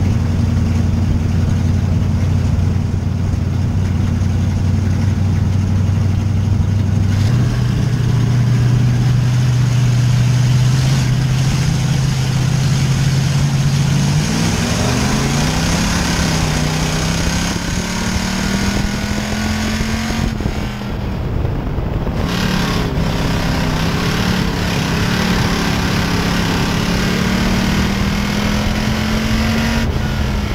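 Pure Stock dirt-track race car engine heard on board, running at a steady low drone at pace speed, stepping up in pitch about seven seconds in, then rising and falling with the throttle from about halfway.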